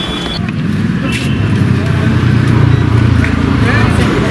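Background voices over a loud, low rumble that swells from about a second in and holds until near the end.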